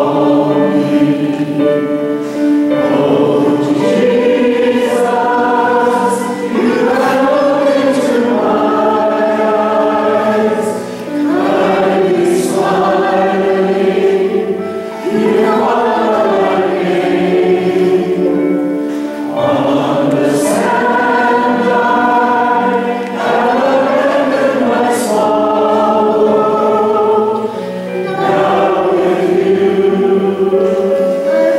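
Choir singing in slow, held phrases with short breaks between them.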